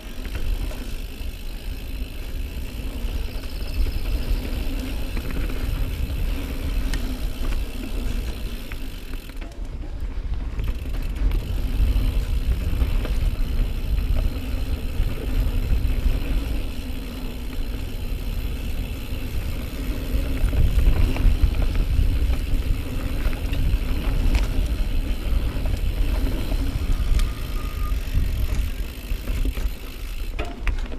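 2018 Norco Range full-suspension mountain bike descending dirt singletrack: a steady rumble and rattle of tyres and frame over the trail, loudest about 20 seconds in.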